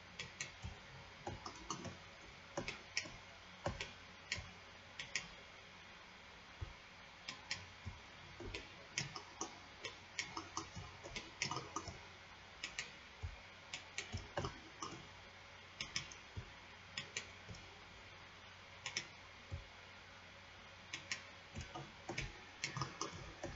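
Computer mouse and keyboard clicking: irregular short sharp clicks, many in quick pairs, over a faint steady hum.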